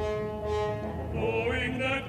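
Recorded classical music: a held orchestral string chord, then an operatic voice with wide vibrato entering a little after halfway.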